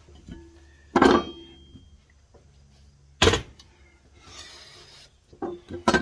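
Two loud clanks of steel on steel, about two seconds apart, the first ringing on briefly: a steel flat bar and a steel tube being handled and set down on a steel welding table.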